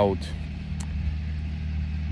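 A steady low mechanical hum of a running machine, unchanging, with a faint click a little under a second in.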